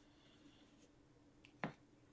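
Near silence, broken late on by a single short, sharp snap or click as trading cards are handled on a table.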